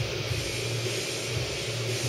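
Steady low background rumble with a faint even hiss, and no distinct event.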